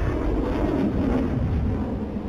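Rocket motor of an Akash surface-to-air missile in flight just after launch, a steady low rumble.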